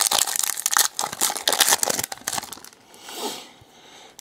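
Foil wrapper of a 2013 Panini Prizm football card pack being torn open and crinkled by hand: a dense, rapid crackle for about the first two and a half seconds, then fainter rustling.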